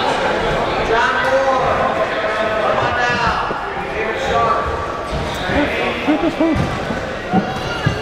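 Coaches and onlookers shouting instructions at a grappling match, with several short dull thumps in the second half.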